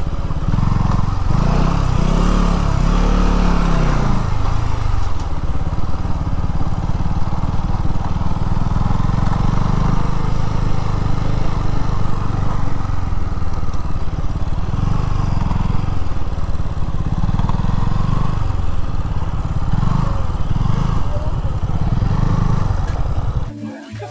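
KTM Duke 200's single-cylinder engine running at low riding speed, the revs rising and falling several times as the throttle is worked. It cuts off shortly before the end.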